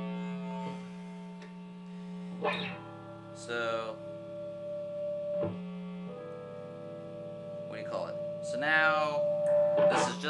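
Epiphone G400 Custom SG-style electric guitar with three humbuckers, played through an amp's distorted channel. Notes and chords are picked and left to ring, changing every second or two, with a few bent notes.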